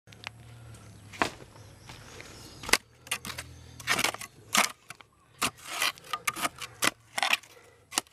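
A small flat-bladed hand digging tool jabbing and scraping into dry, crumbly soil and clods: a run of irregular sharp strikes and gritty scrapes, the loudest a little before the three-second mark.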